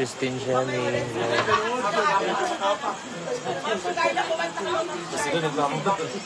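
People talking and chatting.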